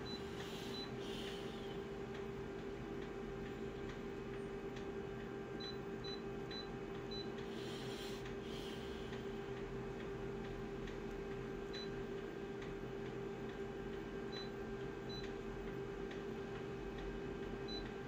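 Short, high beeps from an office photocopier's touchscreen control panel, one for each button press as zoom settings are keyed in, coming irregularly and sometimes in quick runs of two or three. Under them runs a steady low hum.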